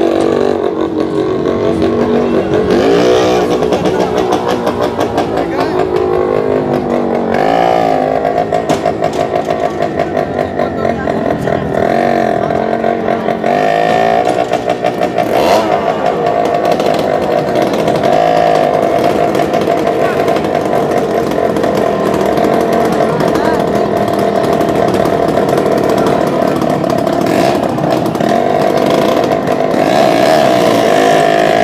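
Several small motorcycle engines running and revving inside a wooden wall-of-death drum as the riders circle its floor. The pitch rises and falls with the revs, then holds a steadier, higher note from about eight seconds in.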